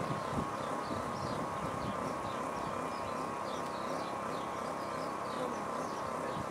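A steady buzzing tone that wavers slightly in pitch, over a background of outdoor noise, with faint short chirps above it.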